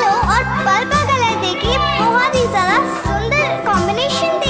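Background music with a steady beat, overlaid with high children's voices gliding up and down in pitch.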